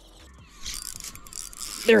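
Spinning reel cranked fast, a rattling whir of the reel taking up line as a bite is struck.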